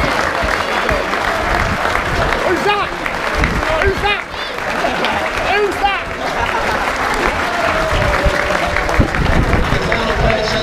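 A large crowd applauding and cheering, with shouts and whoops from individual voices over the clapping.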